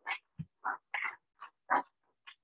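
Applause heard in short, broken bursts, chopped up as if by a call's noise suppression.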